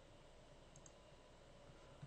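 Near silence with two faint, quick computer-mouse clicks a little before the middle.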